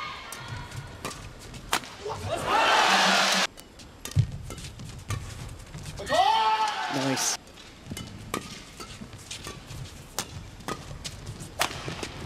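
Badminton rackets striking a shuttlecock in quick, sharp cracks during men's doubles rallies. An arena crowd cheers loudly twice, about two seconds in and again about six seconds in, as points are won.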